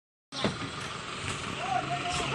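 Outdoor background noise, a steady hiss, with a faint voice coming in near the end.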